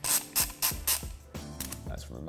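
Heavy-duty ratchet driver being worked back and forth by hand, its pawl clicking in a string of short ratcheting bursts.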